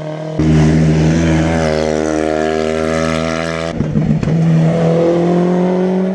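Rally car engine running hard at high revs, holding a steady note, then a gear change about four seconds in with a few short cracks, after which the revs climb again as it accelerates.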